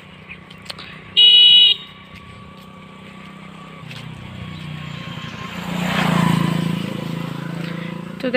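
A motor scooter sounds its horn once, a short bright toot about a second in, then passes from behind, its small engine growing louder to a peak around six seconds and fading as it rides away.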